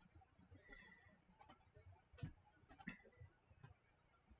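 Faint, irregular clicks of a computer mouse, about half a dozen over a few seconds, against near silence.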